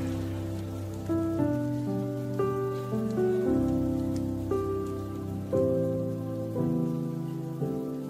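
Soft worship keyboard music playing slow, sustained chords that change about once a second, over a faint steady hiss.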